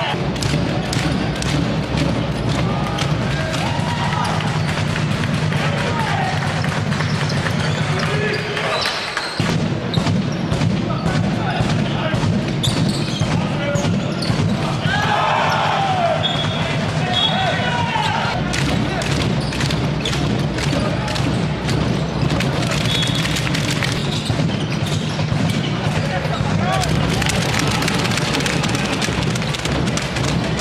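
Handball bounced again and again on a sports-hall floor during play, with many short sharp knocks, among players' and spectators' voices.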